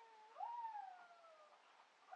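Drawn-out animal cries, each jumping up in pitch and then sliding slowly down: the end of one, then a louder one about half a second in that lasts about a second.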